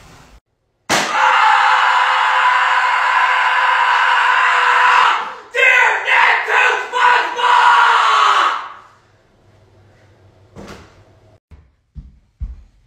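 A person screaming loudly: one long, steady, high-pitched scream of about four seconds that starts suddenly about a second in, then a run of shorter, wavering screams that stop near nine seconds.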